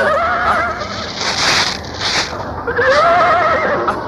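Horse whinnying twice, a wavering call at the start and a longer one near the end, with a breathy noise between them.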